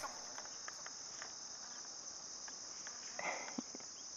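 Faint, steady, high-pitched insect trilling, with a few soft clicks and a brief rustle and knock about three and a half seconds in.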